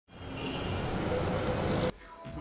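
Street traffic noise that fades in from silence, grows steadily louder, and cuts off suddenly near the end.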